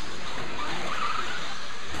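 Electric stock-class RC buggies running on an indoor dirt track: a steady wash of motor and tyre noise, with a faint motor whine about a second in.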